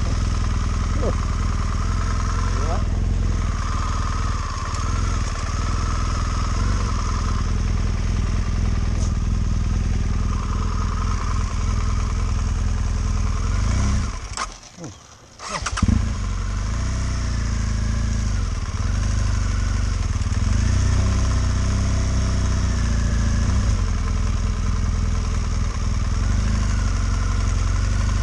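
BMW GS motorcycle's boxer-twin engine running at low revs as the bike is ridden slowly over a rutted dirt track. The sound breaks off briefly about halfway through, then the engine carries on.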